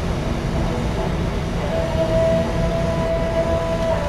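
Steady rush of a glassblower's bench torch flame together with a large squirrel-cage exhaust fan, a low, even noise. A thin steady whistle comes in a little before halfway and holds.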